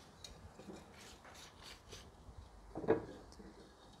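Thin stainless steel wire being drawn through the holes in a wooden beehive frame's side bar. It makes a few faint, scratchy rubs as the hands work the wire and the wood.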